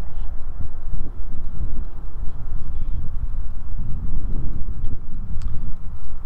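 Footsteps on asphalt with a low rumble of wind on the microphone.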